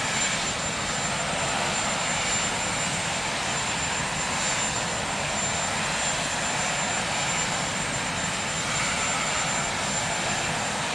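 Turbine engines of the Marine One VH-3D Sea King helicopter running: a steady rushing noise with a thin high whine held on one pitch.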